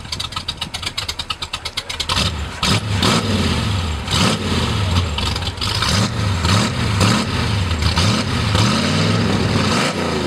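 Buick 401 Nailhead V8 in a 1932 Ford gasser, running with a fast, even pulsing for about two seconds and then revved in repeated blips, its pitch rising and falling each time.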